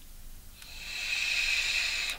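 A long draw on a handheld vape: a steady hiss of air pulled through the device, starting about half a second in and growing louder until it cuts off.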